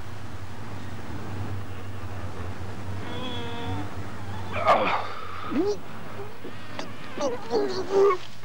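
A man's strained vocal noises, grunts and groans with a wavering pitch, as he heaves a barbell overhead, heard over a steady low hum. There is a louder exclaimed burst just before the middle and more short effortful sounds near the end.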